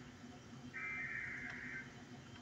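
A high, steady, chord-like tone of several notes, sounding for about a second, starting just under a second in, in a repeating on-off pattern.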